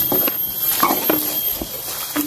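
Footsteps walking through grass and leafy undergrowth, with uneven rustling and small clicks. Twice a brief, steady low hum-like tone sounds.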